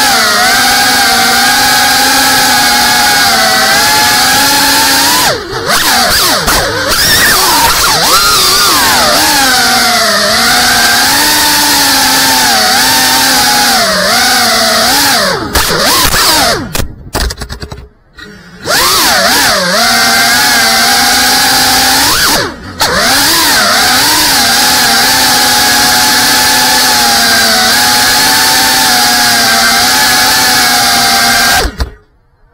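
GEPRC Cinelog35 cinewhoop's brushless motors and ducted propellers whining as picked up by the onboard camera's microphone, the pitch rising and falling with the throttle. The sound drops out briefly a few times as the throttle is cut, longest for about two seconds in the middle.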